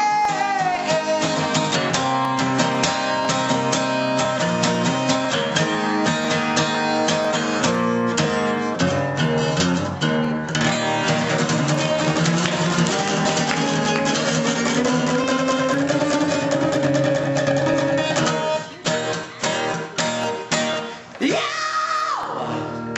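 An acoustic guitar strummed steadily, with a man singing over it. About three quarters of the way through, the strumming thins into separate strokes with short gaps.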